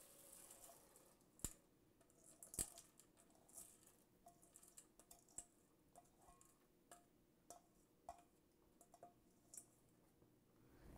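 Near silence with a scatter of faint clicks and taps as lentils are tipped from a metal bowl into a steel pot of mushrooms and water; the two clearest clicks come early, then smaller ticks follow.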